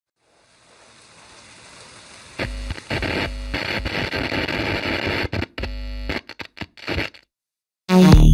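Intro of a dark techno track: a hiss fades in, becomes loud noise over low bass notes about two and a half seconds in, then breaks up into choppy stutters and cuts out briefly before the full beat comes in right at the end.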